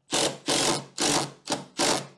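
Cordless impact driver driving a 70 mm screw at an angle through a timber gate brace into the rail, run in about five short bursts on the trigger.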